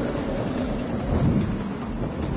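Loud, steady low rumbling noise with a hiss above it, a dramatic sound effect, with no speech.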